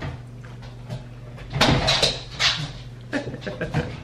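A bernedoodle dog making excited noises at the offer of a walk: a run of short, loud, rough sounds about halfway through, then a few softer ones near the end.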